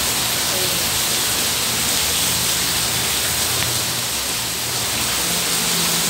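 Steady hiss of heavy rain falling.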